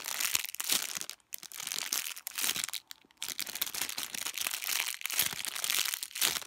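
Clear plastic packaging bag crinkling as hands squeeze a soft foam squishy through it. The rustling is irregular and stops briefly about a second in and again about three seconds in.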